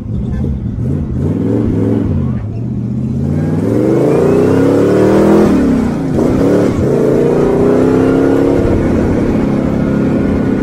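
Rat rod's engine revving hard under acceleration, its pitch climbing, dropping sharply about six seconds in as it shifts gear, then climbing again.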